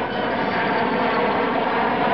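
Jet engines of a B-52 bomber running, a steady, even noise heard through an old, band-limited newsreel recording.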